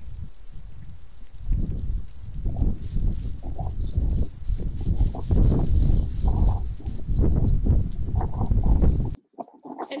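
A wolverine scratching and digging into snow in a rapid, rough series of scrapes and strikes, at a spot where an elk head lies buried deep beneath. It gets much louder about a second and a half in and cuts off suddenly near the end.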